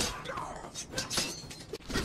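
Breathy gasps and scuffling sounds from a struggle, coming in short bursts about a second apart.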